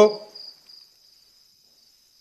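Crickets chirping in a steady, faint, high-pitched trill.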